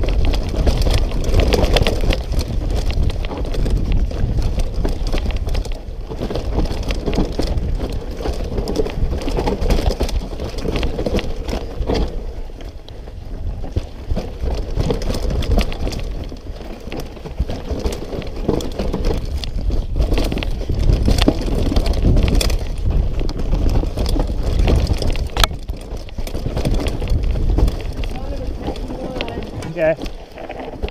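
Mountain bike ridden fast down a dirt trail: wind buffeting the camera microphone over the rattle and rumble of tyres and bike on the ground, with one sharp knock about 25 seconds in.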